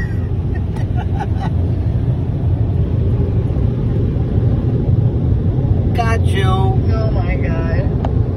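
Steady low rumble of car wash machinery heard from inside the car's closed cabin, with a few light clicks about a second in. A person's voice comes in near the end.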